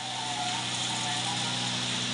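The electric motor and drivetrain of a home-built four-wheel electric vehicle running steadily as it drives along, a mechanical whirr under a constant low hum.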